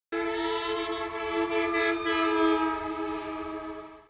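A sustained chord of several steady tones, like a horn, starting suddenly and holding before fading away near the end.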